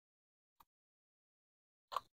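Near silence broken by two short clicks, a faint one about half a second in and a louder one near the end, from handling a solar charge controller and its screw-terminal wires.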